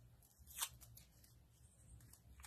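Near silence with faint rustles and a soft tick about half a second in: fingers handling a small paper flower and sticking foam pads onto it.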